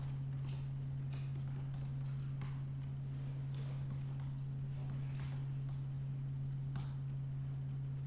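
Laptop keyboard keystrokes, irregular single clicks spaced about half a second apart as a terminal command is typed and output paged through, over a steady low hum.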